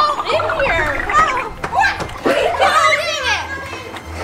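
Several children's voices shouting and squealing excitedly at play, overlapping one another, with high swooping cries.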